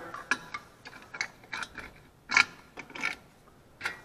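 Irregular light metal clicks and clinks as a small engine's muffler and its exhaust sealing washers are handled and fitted onto the exhaust studs.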